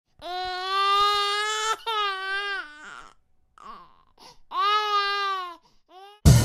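Baby crying: three long wails, each held on a steady pitch, with a pause for breath between the second and third.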